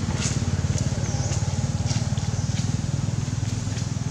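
A motor engine running steadily with a low, fast-pulsing throb.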